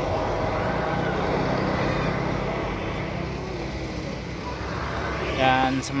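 Intercity bus driving past, its diesel engine giving a steady drone over road noise that eases off about three seconds in. A man's voice starts near the end.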